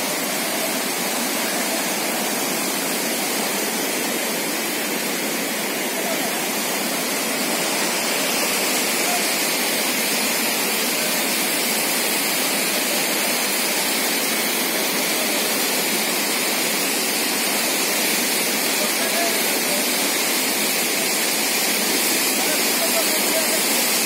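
Steady rushing of a swollen, muddy river in flood, growing a little louder about eight seconds in.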